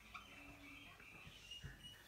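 Faint squeaks of a marker pen writing on a whiteboard.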